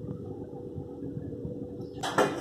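Steady low background rumble with a faint constant hum, unchanging throughout.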